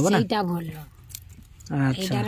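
A voice speaking, with a quieter gap in the middle holding a few faint clicks and crackles from hands breaking apart and cleaning a raw sea crab's shell.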